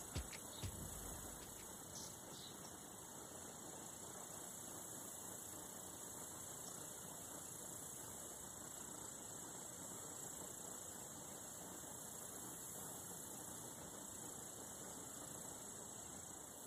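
Quiet, steady background noise: a faint hiss with a thin high-pitched tone running through it, and a couple of small knocks in the first second.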